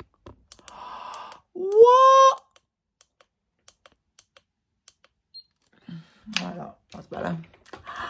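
A person's wordless vocal exclamation, a loud 'ooh' rising in pitch about two seconds in, after a short breathy sound. Then a quiet stretch with faint small clicks, and low mumbling voice sounds near the end.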